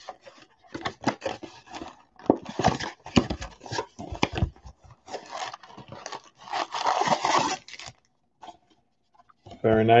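Cardboard blaster box of 2020 Donruss football cards being torn open along its perforated end flap: a run of uneven ripping and rustling of thin card that stops about eight seconds in.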